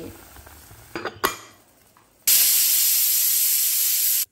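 Prestige pressure cooker whistle venting steam on high flame: a loud, steady hiss that starts a little over two seconds in, after a single click about a second in. It is the first whistle, the sign that the cooker has come up to full pressure.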